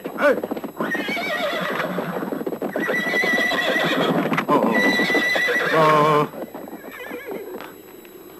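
Horses galloping with hooves clattering, and horses neighing. The clatter stops abruptly about six seconds in.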